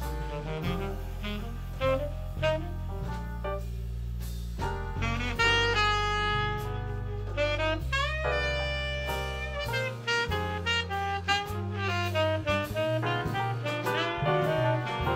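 Saxophone solo in a slow jazz ballad over piano, upright bass and drum kit, with a long held note about eight seconds in.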